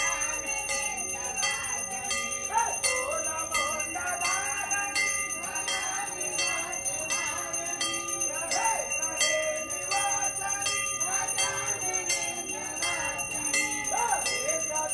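Temple bells rung continuously in quick, even strokes, about two to three a second, during an aarti, with voices singing along.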